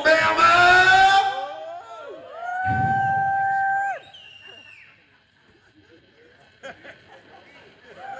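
A man's voice through a concert PA stretches out the last words of a shouted introduction. About three seconds in comes a loud, steady held note lasting a little over a second. After that there are faint cheers and whistles from an audience in a hall.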